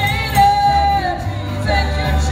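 Women singing a gospel worship song through microphones, backed by a live band with electric guitar and bass; one voice holds a long high note about halfway through the first second.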